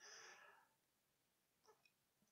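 Near silence: a pause between spoken sentences, with only faint room tone.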